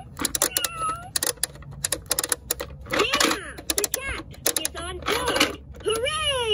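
VTech Fly and Learn Airplane toy: rapid plastic clicking as its nose propeller is turned by hand, with a recorded cat meow from its speaker near the start. Later come sliding, chirpy electronic sounds from the toy's speaker.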